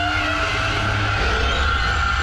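Night feeder creature scream, a sound effect made by dragging a piece of styrofoam across a large sheet of wet glass. It is one long screech held at a steady pitch, over a low steady rumble.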